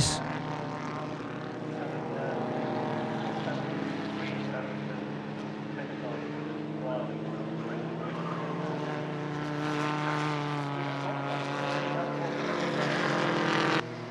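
Engines of two pre-war sports racing cars running hard together through a corner: a steady drone of several engine notes that rise slightly in pitch near the end, then cut off suddenly.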